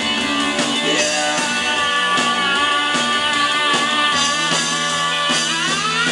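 Rock band playing live, an instrumental passage: electric guitars holding notes over a steady drum beat. Near the end a note slides upward in pitch.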